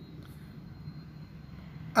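Ring spinning frame running: a steady drone from the turning spindles, with a faint high whine over it.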